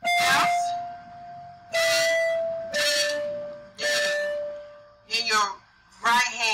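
Electronic keyboard playing a slow right-hand melody: four held notes, each a little lower than the last, with a voice sounding briefly at the start of each note and twice more near the end.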